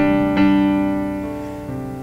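Keyboard chords: one struck at the start and another about half a second in, held and slowly fading.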